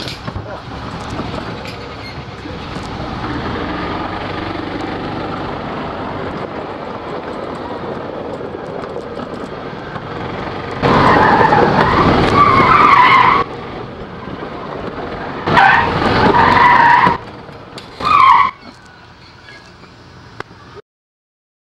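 Golf cart driving fast on pavement with a steady rushing sound, then its tyres squealing loudly three times in hard turns: a long squeal of about two and a half seconds, a second of about a second and a half, and a short last one.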